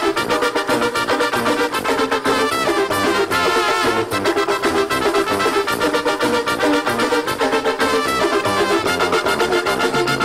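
Live duranguense band music: an instrumental passage with brass horn lines and keyboards over a fast, steady drum beat.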